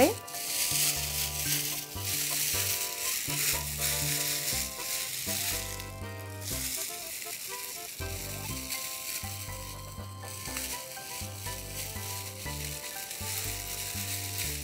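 Clear plastic oven bag crinkling and rustling unevenly as gloved hands gather and twist its top closed.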